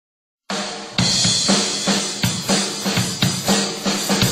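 Ludwig drum kit played in a steady groove, starting about half a second in: kick and snare strokes about two to three a second under ringing cymbals.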